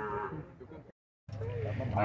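Zebu cattle lowing faintly in the pens, with a brief dead-silent dropout just before the middle where the recording is cut.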